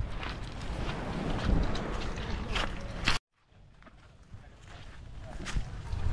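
Footsteps crunching on loose beach pebbles and gravel over a steady noisy background. The sound cuts off suddenly about three seconds in, then a quieter outdoor background slowly grows louder.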